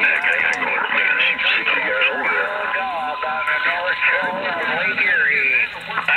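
Voices coming in over a CB radio's speaker on lower-sideband skip. The audio is thin and narrow, with a steady whistle tone underneath until about five seconds in.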